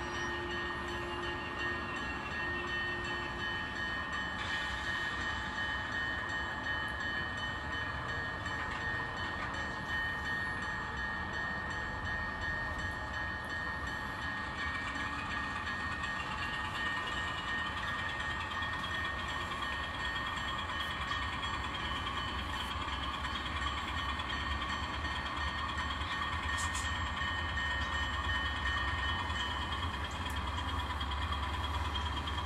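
N scale model diesel switcher locomotive running slowly along the track: a steady hum with several held whining tones, one of them rising in pitch about fifteen seconds in.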